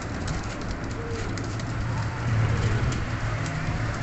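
Several domestic pigeons cooing, over a steady low hum.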